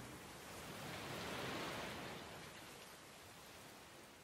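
Soft rain sound, a steady hiss that swells a little and then fades out near the end.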